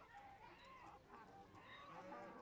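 Faint chickens clucking, short bending calls scattered through the background of a town-square soundscape.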